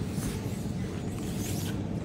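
Steady low background noise with a low hum and no distinct events: room tone.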